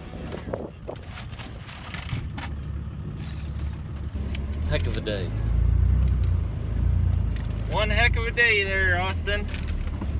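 Pickup truck running and driving, heard from inside the cab: a steady engine and road rumble that gets louder from about halfway through, with a short stretch of voice near the end.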